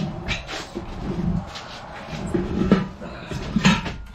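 Metal tire bar knocking and scraping against the metal rim of a manual tire changer as the lower bead of a small turf tire is pried and banged off. It is a run of irregular clanks, with the loudest about three seconds in and near the end.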